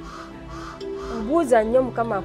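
A person's voice, untranscribed, over a steady background music bed; the voice comes in after about a second.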